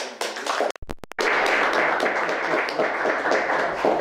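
Audience applauding, starting abruptly about a second in right after a short break in the sound.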